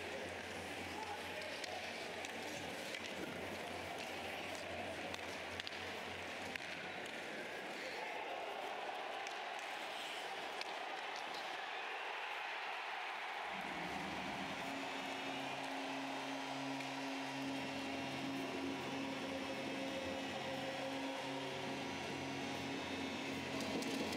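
Ice hockey arena crowd noise during play. Just after the goal, about halfway through, a sustained low tone with a regular pulsing beat starts under the crowd: the arena's goal horn or goal music.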